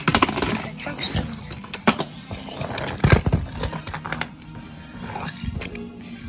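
Background music, with sharp clacks of plastic toy train trucks being pushed by hand and knocking together, the loudest about three seconds in.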